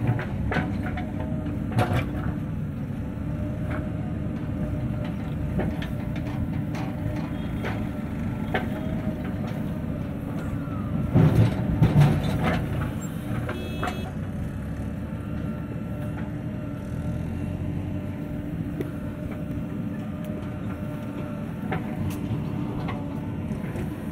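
JCB 3DX backhoe loader's diesel engine running steadily under load as it digs and swings its bucket. About eleven seconds in, a louder clatter as the bucket tips soil and stones into the steel trailer.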